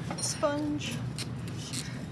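Light clicks and scrapes of clay tools and wooden dowels being handled on a work board, with a short voice sound about half a second in and other voices in the background.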